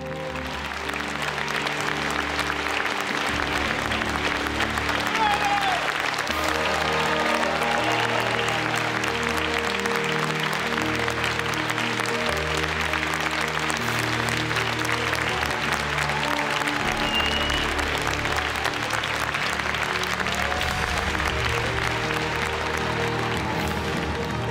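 A large theatre audience applauding at length, the clapping swelling over the first couple of seconds, with a few scattered voices calling out. A soft music score with sustained tones plays underneath.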